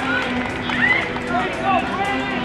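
Outdoor sideline ambience: people's voices talking and calling out in short bursts, over faint music.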